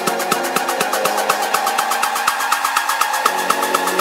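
Deep house track in a breakdown, its kick and bass dropped out: fast, even hi-hat-like ticks, about eight a second, over a sustained synth pad that thins near the end.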